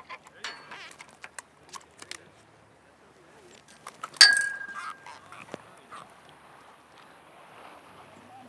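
Handling sounds of a freshly landed fish and fishing tackle at a metal pier railing: scattered light clicks and knocks, then one sharp metallic clink about four seconds in that rings briefly.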